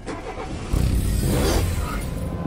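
Logo-intro sound effect: a low rumble that swells and grows louder about three-quarters of a second in, with a whoosh sweeping past around the middle.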